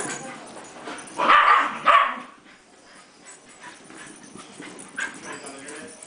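Dogs at play: one dog gives two loud barks, about one and two seconds in. Quieter play noises follow.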